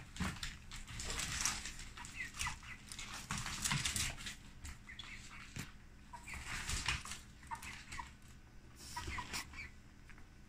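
A chicken clucking softly in short, scattered notes, mixed with irregular scuffing and rustling noises.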